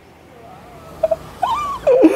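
A man's short whimpers and a rising then falling moan in the second half, mock crying that runs into drawn-out wails. The first second is quiet.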